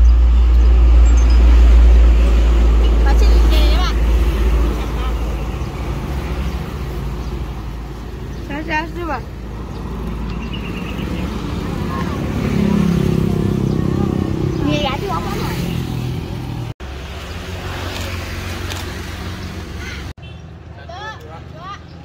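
Roadside traffic: cars and motorcycles passing on a paved road, with a strong deep rumble through the first few seconds. Brief voices come and go over it.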